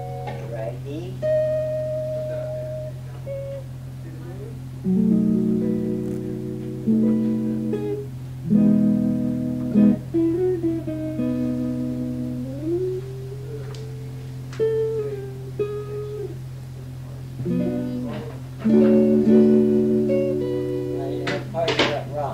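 Acoustic guitar played slowly: chords and single notes are plucked every second or two and left to ring, with a few notes sliding in pitch. A steady low hum runs underneath.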